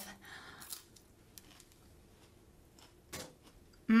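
A small red chili pepper being bitten into and chewed: a few faint, crisp crunches spread over otherwise quiet moments.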